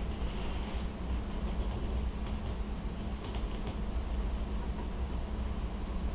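Steady low hum with a few faint, light clicks scattered through it as hands handle a tool and the fly at a fly-tying vise.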